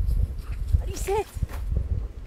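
Footsteps in snow over a low, uneven rumble, with a short high-pitched whine-like call about a second in.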